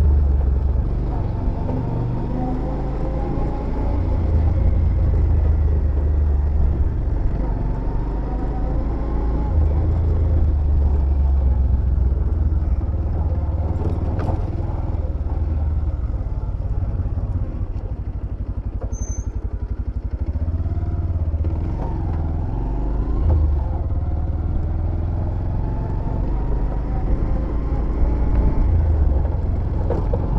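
Bajaj Pulsar 125's single-cylinder engine running as the motorcycle is ridden at low speed, its pitch rising and falling several times with throttle and gear changes over a steady low rumble.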